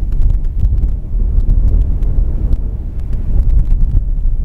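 Loud, low, buffeting rumble with scattered crackles on the camera's microphone, the strange noises the camera is making.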